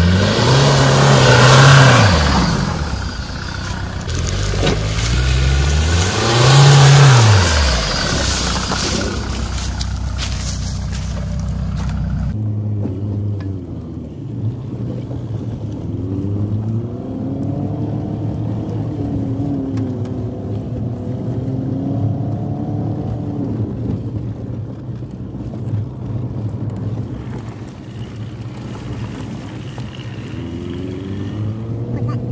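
VW Golf Mk3 estate's engine revving hard twice, each time rising and falling in pitch, over the noise of tyres churning through mud. About twelve seconds in the sound changes abruptly to the engine running at lower revs with gentle rises and falls as the car drives along a forest track, heard from inside the car.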